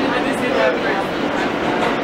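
R160A subway car running between stations, heard from inside the car: a steady rumble of wheels on rail and running noise.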